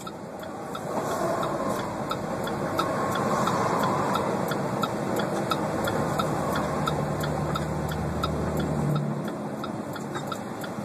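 Road and engine noise inside a moving truck cab, with an even ticking about three times a second, typical of a turn signal. A deeper steady engine hum joins for a few seconds in the second half.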